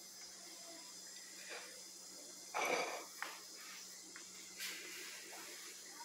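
Faint taps and scrapes of a spatula against an aluminium cake pan as a piece of cake is cut and lifted out, with one short breathy rush a little before halfway and a few small clicks after it.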